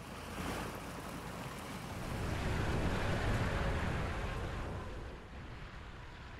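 Tracked armoured vehicle driving past, its engine and tracks running with a deep noisy sound that grows louder to a peak around the middle and then fades away.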